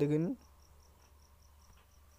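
A man's voice ends on a drawn-out vowel just after the start. Then comes near silence with a faint, high-pitched chirping that repeats evenly about five times a second.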